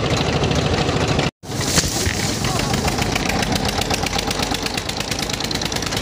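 Vehicle engine running with a fast, even pulse, heard from the open back of the vehicle. The sound drops out for an instant a little over a second in, then the engine resumes.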